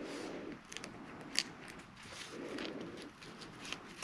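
Quiet handling of cardboard strips and a brass paper-fastener brad: soft rustling and scraping with scattered small clicks, one sharper click about a second and a half in.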